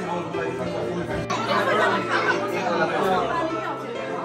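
Chatter of many people talking over one another in a room.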